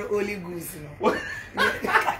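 A woman laughing and speaking in short, broken bursts.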